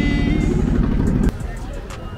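A voice holding one long note over a low rumble, cut off abruptly a little past a second in. After that, quieter street noise with passing traffic.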